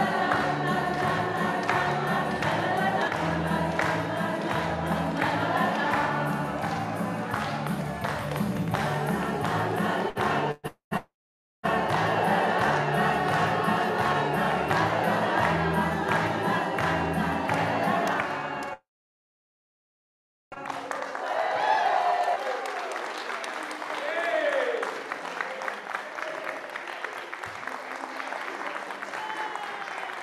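Mixed choir singing with accompaniment and a steady bass beat, played back over a video call. The sound drops out completely for about a second near the middle and again for about two seconds. After the second dropout the music is gone and only voices are heard, quieter.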